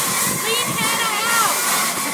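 Indistinct voices of several people talking over a steady whirring hiss with a thin constant tone.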